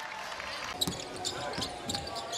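Basketball bouncing on a hardwood court, several sharp knocks from about a second in, over the murmur of an indoor arena crowd.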